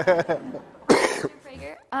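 A person coughing once to clear their throat, about a second in, after the tail of a man's laughing speech.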